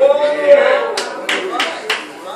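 A drawn-out vocal call that rises and falls in pitch, followed by four sharp hand claps at about three per second.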